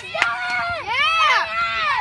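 Children's high-pitched voices shouting excitedly, in long cries that rise and fall in pitch and overlap one another.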